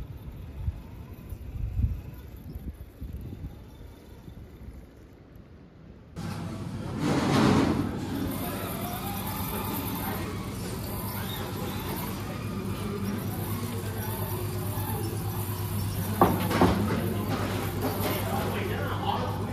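Axial Capra RC rock crawler working over rock: at first wind on the microphone and a few low knocks. About six seconds in it gives way to a louder indoor room with a steady low hum and background voices, with a few sharp knocks near the end.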